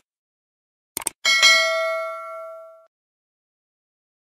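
Two quick mouse-click sounds about a second in, followed at once by a bright bell ding that rings out and fades away over about a second and a half.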